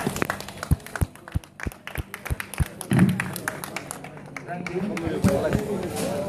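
A small audience clapping: scattered sharp hand claps, about three a second, that die away after about three seconds, with voices talking.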